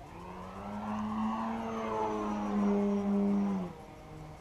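Engine of a large radio-controlled aerobatic plane running at high throttle, one steady note that builds in loudness, then drops away abruptly near the end as the throttle comes back.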